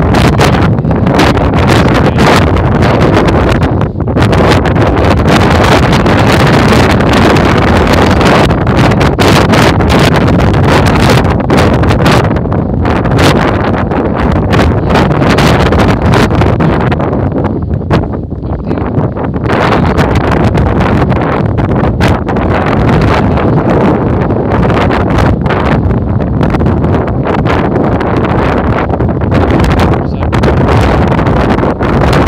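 Strong wind buffeting the microphone, a loud, gusty rumble that eases briefly a little past the halfway point.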